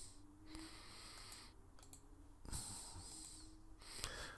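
Faint computer mouse clicks over quiet room tone.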